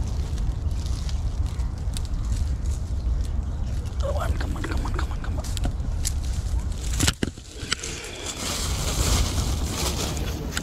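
Wind buffeting the microphone as a steady low rumble, with scattered handling clicks and one sharp knock about seven seconds in.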